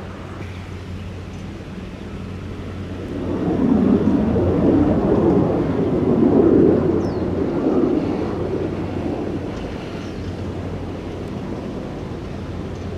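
Mirage 2000 fighter jet passing low overhead, the rushing noise of its single turbofan engine. It swells about three seconds in, stays loudest for several seconds, then fades away.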